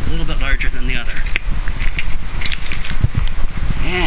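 A man talking over a steady low rumble.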